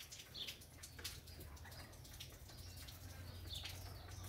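Faint outdoor ambience: a low steady hum with two brief, faint high chirps from distant birds, about half a second in and near the end.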